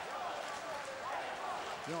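Ice hockey arena crowd heard under a TV broadcast: a steady murmur of spectators with faint, scattered shouted voices.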